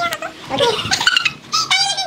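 A woman laughing in short, high-pitched squeals and giggles, the shrillest near the end.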